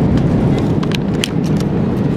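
Steady low roar of an airliner cabin in flight, the engine and airflow noise heard from a passenger seat. A few light clicks sound about a second in.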